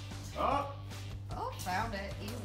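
Background music with a steady low beat, with a brief wordless shout about half a second in and more short voice sounds near the end.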